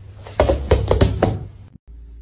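Cat's paws thumping on a wooden floor as it pounces at a laser-collar dot: a quick run of about six knocks in the first second and a half.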